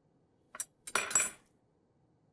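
Metal forks clinking against a ceramic bowl: a short click about half a second in, then a louder clatter with a high ring around one second in.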